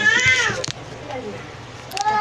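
A high-pitched, drawn-out vocal call that rises and then falls in pitch, ending about half a second in; after that only quieter background remains.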